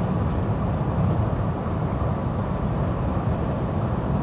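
Steady cabin noise of a Mercedes-Benz GLA 250e plug-in hybrid cruising at about 120 km/h on electric power alone, with its petrol engine off. It is the rush of air around the body, tyres on a wet road and rain drops on the windscreen, at about 62 dB inside the cabin.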